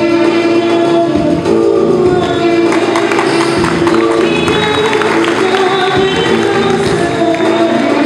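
A girl singing into a microphone over amplified backing music, with a drum beat running under the song.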